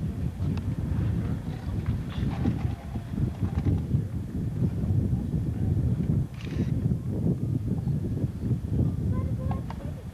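Wind buffeting the camcorder microphone: an irregular, gusting low rumble, with faint voices in the background.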